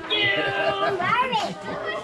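Young children's voices chattering and squealing excitedly, high-pitched, with a rising and falling squeal about a second in.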